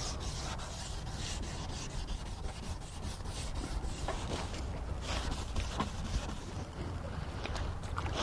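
600-grit wet sandpaper rubbed by hand back and forth over a plastic headlight lens, a steady scratchy rubbing as the yellow oxidation is sanded off.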